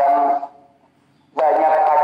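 A man talking, with a pause of about a second in the middle.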